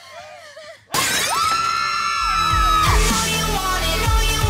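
A faint voice, then about a second in a sudden loud crash, like breaking glass, with a long held scream over it. A music track with a heavy thumping beat takes over soon after.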